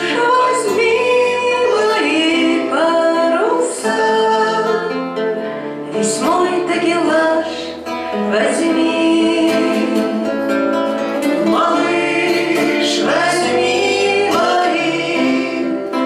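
A woman singing a bard song while accompanying herself on acoustic guitar.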